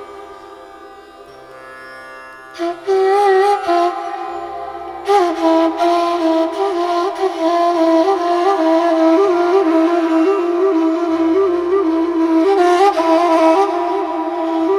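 Persian ney improvising over a steady tanpura drone. The drone is heard alone at first. The ney enters with a short phrase about three seconds in, then from about five seconds plays a continuous line ornamented with quick repeated turns.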